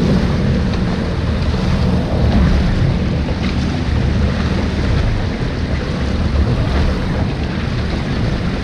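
Jet ski running at a steady cruising speed on the open sea: a low engine drone mixed with water rushing against the hull and wind buffeting the microphone.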